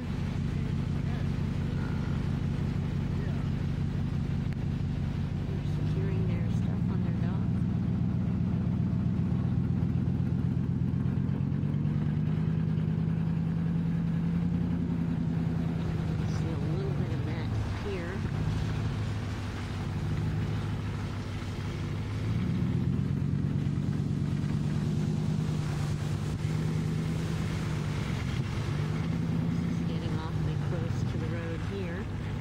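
Car engine heard from inside the cabin while driving slowly. Its pitch rises as the car speeds up about six seconds in, falls back around eighteen seconds, then rises and falls again in the last third.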